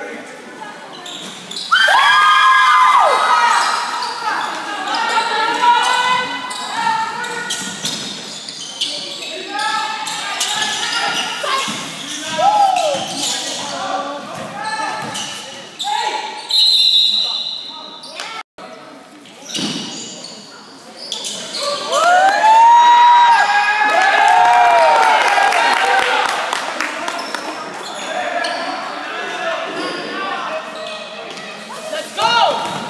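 A basketball bouncing on a gym's hardwood floor during play, with players and spectators shouting, all echoing in the gym. The shouts are loudest about two seconds in and again past the twenty-second mark.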